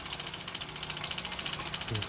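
The waste-oil distillation machine running: a steady mechanical hum with a fast, even pulsing, typical of its small electric feed pump.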